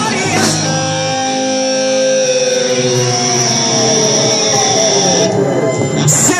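Live rock band holding out a loud, ringing chord on electric guitars, with several pitches sliding downward in the middle. A high steady tone cuts off shortly before the end.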